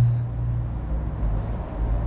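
Low, steady rumble of outdoor background noise. A low hum fades out within the first half second.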